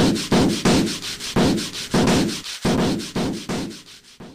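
Rhythmic scraping strokes, about two a second, each starting sharply and dying away, fading toward the end.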